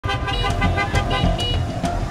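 Busy street traffic with car horns tooting repeatedly in short notes, over a steady low pulsing beat.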